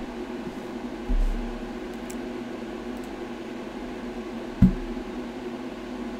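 Steady mechanical hum in a small room, with a dull low bump about a second in and a single sharp click just past halfway.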